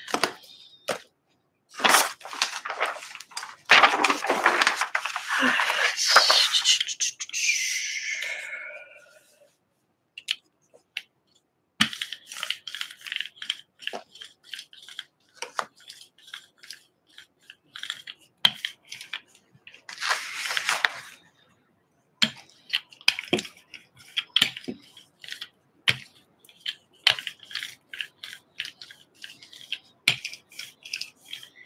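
A brayer rolling acrylic paint across a gel printing plate, making a tacky crackle of quick clicks through the second half, louder for a moment about two-thirds of the way in. Earlier comes a longer spell of rushing noise that ends in a short wavering squeak.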